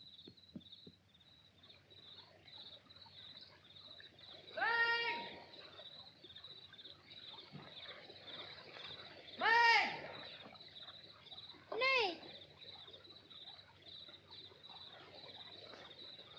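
Crickets chirp steadily in a night wood. Three times a voice calls out long, each call rising and then falling in pitch; the second call is the loudest.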